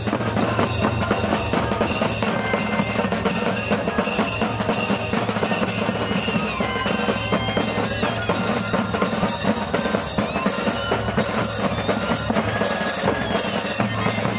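A moseñada band playing: bass drums and snare drums beat a steady, dense rhythm with cymbal clashes, under the melody of moseño flutes.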